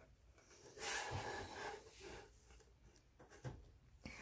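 Faint rubbing and rustling of paperboard packaging being handled: a soft scrape of about a second starting about a second in, and a shorter one near the end.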